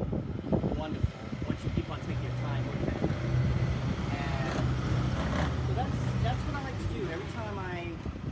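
A motor vehicle passing on the street: a steady engine hum that swells in the middle and fades away near the end.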